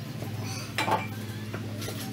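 Small metal parts or tools clinking as a scooter's CVT transmission is taken apart: a sharp clink a little under a second in and a fainter one near the end, over a steady low hum.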